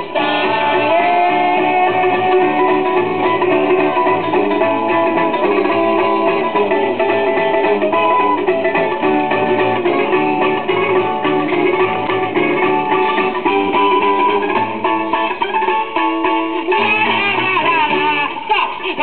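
A 78 rpm record playing on a BSR UA8 Monarch record changer in a Portadyne record player: an instrumental passage of a song, with no singing, between sung verses.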